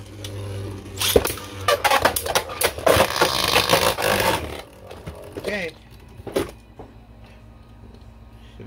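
Two Beyblade Burst spinning tops (Cyclone Ragnaruk and Ultimate Valkyrie) in a plastic stadium: a steady whir, then a few seconds of rapid clacking collisions and scraping as they hit each other and the stadium wall. A couple of lone clicks follow as one top is knocked out into a pocket at the stadium's edge, and it goes quieter.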